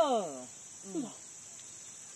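Steady high-pitched drone of forest insects, with a short falling vocal sound and a murmured "hmm" from a person in the first second.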